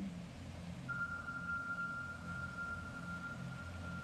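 Steady low room hum, joined about a second in by a thin, steady high whine that holds on without fading.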